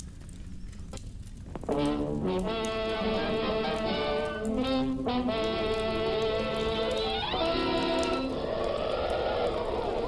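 Orchestral fanfare with brass for a 1940s cartoon's studio opening logo, starting about two seconds in. Near the end the music gives way to a rushing whoosh with sweeping rises and falls in pitch.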